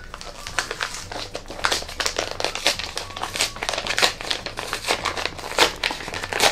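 A large kraft-paper envelope being torn open by hand, the stiff paper crinkling and ripping in short, irregular strokes.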